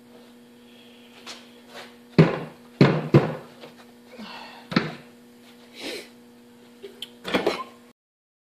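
Wooden sand-casting flask frames knocking and thudding as a freshly poured mould is opened and the frames are handled and set down over a barrel of casting sand. There are about half a dozen separate knocks, the heaviest a few seconds in, with a steady low hum underneath.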